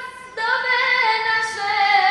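Female voices singing an ilahija, a Bosnian Islamic hymn, in long held notes. A brief break comes just after the start before the next phrase begins.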